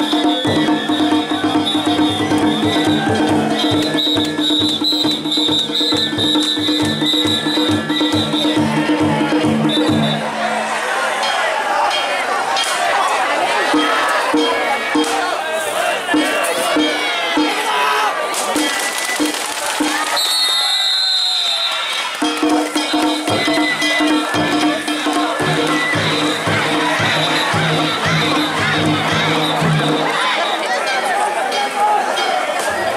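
Danjiri festival music: drums struck in a fast, even beat under steady ringing gongs. It breaks off about a third of the way in for a stretch of a crowd shouting and cheering, and starts again about two-thirds of the way through.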